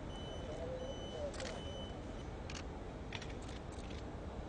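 Camera shutters clicking several times, in small clusters, over a low murmur of voices and steady outdoor background noise.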